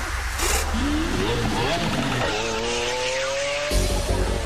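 Hardstyle music from a DJ set: a long rising pitched sweep builds over the track, the bass drops out briefly, then the heavy kick drum comes back in just before the end.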